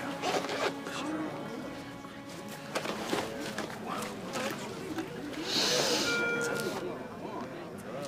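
Background music under low, indistinct chatter. About five and a half seconds in there is a brief hiss, followed by two short high beeps.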